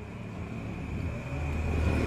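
A motor vehicle approaching: a low engine rumble and road noise growing steadily louder.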